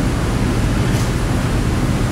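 Steady rushing background noise with no voice, strongest in the low end: room and recording noise in a lecture room during a pause in speech.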